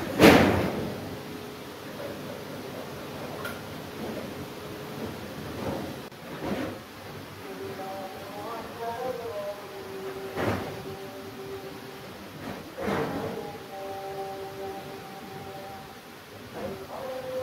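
Knocks from a plastic paint bucket and small brush being handled: one sharp knock at the start, then fainter knocks every few seconds. Faint held tones sit underneath from about halfway on.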